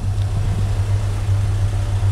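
A car engine idling, a steady low hum with no change in speed.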